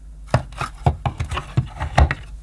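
Hard plastic knocks and clicks as a plastic dusting brush is handled and set down into a Hoover Sensotronic vacuum cleaner's built-in tool compartment: about eight sharp, irregular taps.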